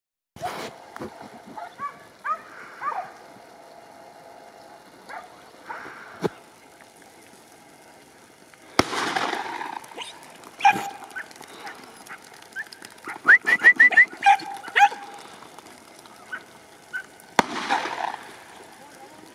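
Podenco hunting hounds yelping and giving short barks in scattered bursts, with a quick run of about six high yelps two thirds of the way through. Two brief rushes of noise also break in, one midway and one near the end.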